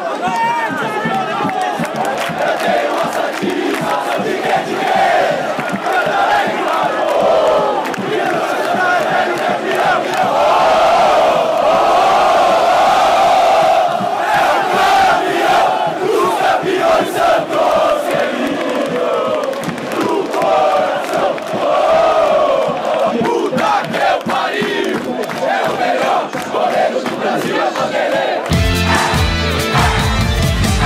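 Stadium crowd of Santos supporters chanting and singing together in the stands, loud and continuous. About a second and a half before the end it cuts to a music jingle with a steady beat.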